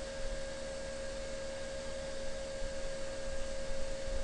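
Steady hum with one clear, unchanging tone over a low hiss: background noise in the recording.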